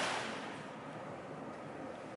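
Small desk fan running, a faint steady whooshing hiss that eases down over the first half second and then holds level. One blade is weighted off balance with a strip of masking tape to simulate a chipped blade.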